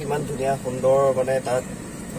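A man talking inside a car, over the steady low hum of the car running.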